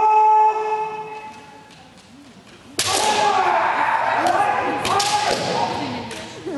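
Kendo kiai: one long shout held on a steady pitch for about a second and a half at the start, then from about three seconds in, loud shouting from the fighters with a few sharp cracks of bamboo shinai striking.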